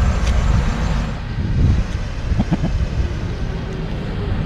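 A small hatchback car's engine running as it drives off, under a heavy low rumble of wind on the microphone.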